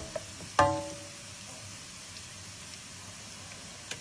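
Smoked pancetta and onion in olive oil sizzling faintly and steadily in a frying pan with the flame just switched off. A brief pitched sound comes about half a second in, and a small click just before the end.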